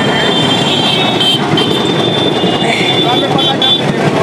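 Steady mechanical grinding noise with a thin, high squeal running over it.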